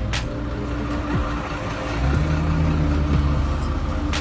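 A vehicle engine running close by, its low rumble growing louder about halfway through, over soft background music. A brief click right at the start.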